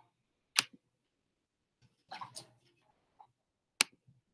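Two sharp computer mouse clicks about three seconds apart, with a brief faint rustle between them.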